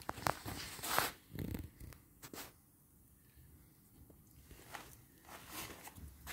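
A few light clicks and knocks from hands and metal parts being handled on a motorcycle engine in the first couple of seconds, then only faint ticks.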